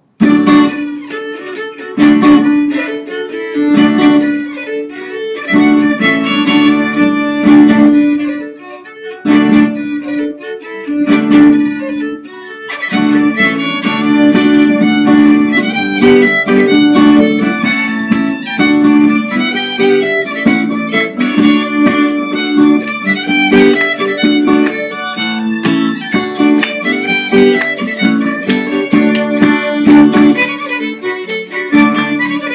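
A small trad Celtic band plays a lively polka on two fiddles with acoustic guitar and keyboard. It starts abruptly and becomes fuller and continuous from about twelve seconds in.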